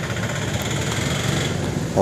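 Steady road-traffic noise with a small engine running.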